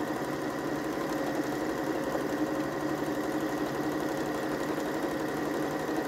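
Domestic electric sewing machine running at a steady speed, stitching a long straight seam through denim.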